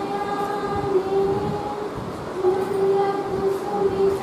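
A group of voices singing together in unison, holding long, steady notes with short breaks between them.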